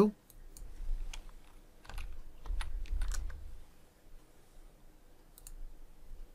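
A short word typed on a computer keyboard: a dozen or so separate, sharp keystroke clicks, spaced irregularly, with a brief low rumble near the middle.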